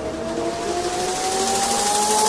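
Electronic trap/nightcore remix instrumental: a synth riser glides steadily upward over sustained synth notes and a hiss of noise, a build-up heading into the drop.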